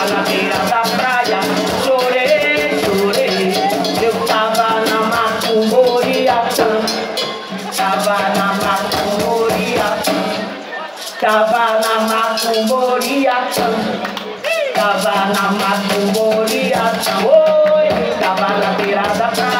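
Live acoustic music: a voice singing phrases over hand drums and a shaker, with short breaks between the sung lines.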